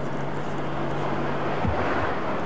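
A 1992 Nissan Stanza's 2.4-litre four-cylinder engine humming steadily with tyre and road noise as the car drives along, the noise building slightly near the end as it draws closer.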